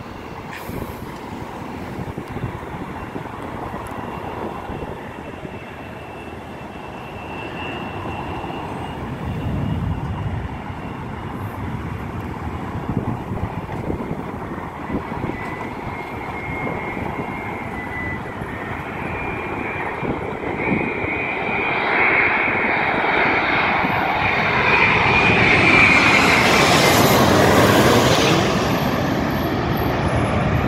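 Passing road traffic, then a Boeing 787 jetliner on final approach coming in low overhead: the jet engine sound grows over the second half with a high whine, is loudest shortly before the end, and drops in pitch as it passes.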